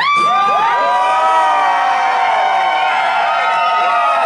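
A group of men whooping and hollering together: several long 'woo' calls that jump up sharply at the start, then hold and slowly sag in pitch, with the guitar stopped.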